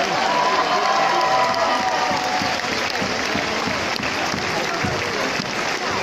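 Audience applauding steadily, with a voice calling out over the clapping for the first two seconds or so.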